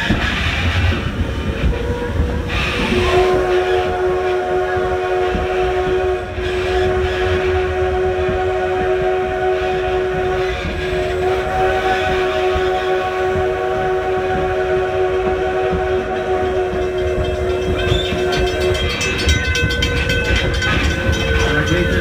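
Steam locomotive Edison's chime whistle blowing one long blast of several notes at once, held for about sixteen seconds with two brief dips, as the train nears a road crossing. Under it runs the rumble and clatter of the wheels on the rails.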